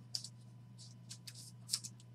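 Faint rustles and short scrapes of a trading card and its clear plastic holder being handled, four or five brief strokes, over a steady low electrical hum.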